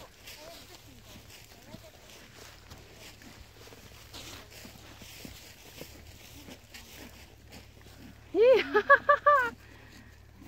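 Low outdoor background with faint scattered small sounds. About eight and a half seconds in, a person laughs briefly and loudly in four or five quick rising pulses.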